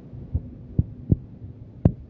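Four dull, low thumps at uneven intervals, the last the sharpest, over faint background noise.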